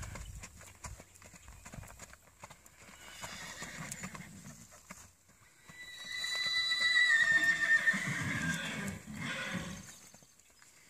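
Hoofbeats of a Rocky Mountain Horse mare being ridden at a gait. From about six seconds in, a horse whinnies loudly for about three seconds, its call sliding slightly down in pitch.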